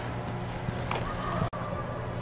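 Steady low hum of a large indoor sports facility, with a faint knock about a second in and a short high tone just after it.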